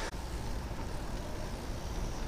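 Steady rush of wind and tyre noise from a bicycle rolling fast along a paved road, heard from a camera riding on the bike.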